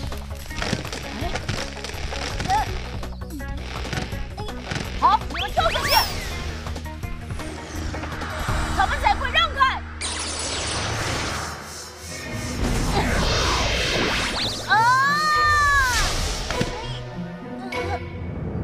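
Cartoon action soundtrack: background music under a dense mix of sound effects and short character vocalisations. Near the end, a loud swooping tone rises and falls.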